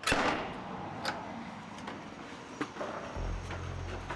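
Corrugated-iron door being unlatched and pulled open: a sharp clack at the start trailing into rattle, then a few lighter knocks. A low steady hum comes in about three seconds in.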